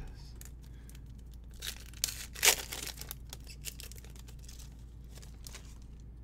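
A Topps Gold Label trading-card pack wrapper being torn open, with a few short rips and crinkles about two seconds in, the loudest about two and a half seconds in.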